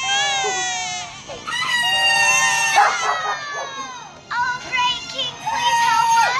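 A high-pitched voice holding three long, drawn-out notes, the first sliding slowly downward and the last held steady near the end.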